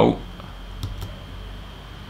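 Steady background hiss with a low hum underneath, the kind of static noise being removed from a voice recording, with a couple of faint clicks about a second in.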